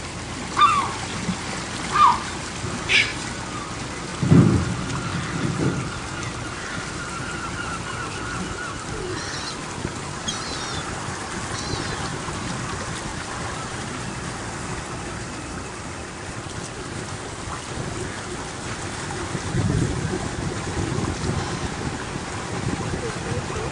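Outdoor harbour ambience: a steady rushing noise with heavy low rumbles around four seconds in and again near the end, typical of wind gusts on the microphone. A few short, sharp bird calls fall in pitch in the first three seconds, and faint high chirps come in the middle.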